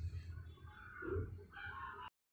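Faint bird-like animal calls, twice, one in the first second and one near the end, over a steady low hum.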